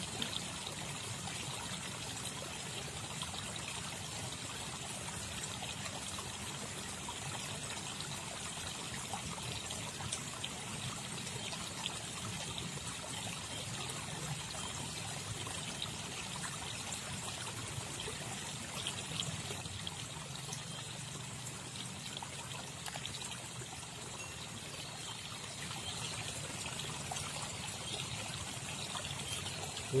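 Steady trickling of flowing stream water, with faint scattered ticks.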